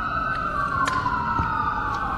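Emergency-vehicle siren wailing: a long, slow tone that falls gradually in pitch, with a second, steadier tone just above it.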